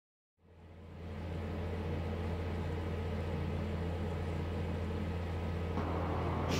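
A steady low hum with faint hiss, fading in over the first second.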